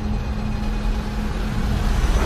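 Deep, ominous rumbling drone from trailer sound design, with a single low held note that fades about a second and a half in.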